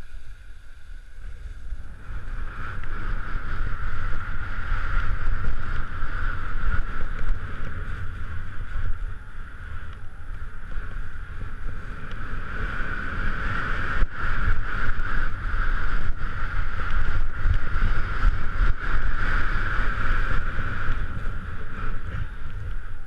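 Skis scraping and chattering over wind-crusted snow on a downhill run, with wind rushing over the action camera's microphone; it grows louder about two seconds in and stays loud. A single sharp knock about fourteen seconds in.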